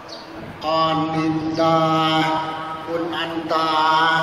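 A man chanting a list of names in a sing-song monotone, each phrase held on one steady pitch, with short breaks between phrases. It is the ceremonial reading-out of participants' names, each name prefixed with the honorific 'Khun'.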